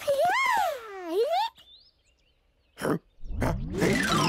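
A high-pitched, wordless cartoon-character voice gliding down in pitch and back up for about a second and a half. After a short quiet gap comes a brief sound, and a rising sweep starts near the end.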